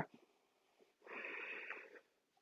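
A woman's single soft exhale, lasting about a second and starting about a second in.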